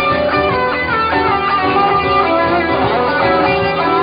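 Stratocaster-style electric guitar playing a lead line with bent notes over a live band's accompaniment.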